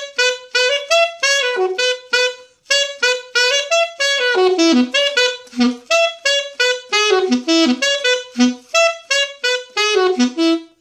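Unaccompanied alto saxophone playing a melody in short, separated notes, one after another without pause.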